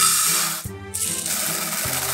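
Dry glutinous rice (mochigome) poured in a stream into a rice cooker's inner pot: a steady rattling hiss of grains with a short break about half a second in. Background music with a soft low beat plays underneath.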